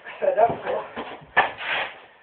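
Feet scuffing and shuffling on a hard, gritty floor, with a sharp scuff about one and a half seconds in followed by a longer scrape. A brief voice sound comes near the start.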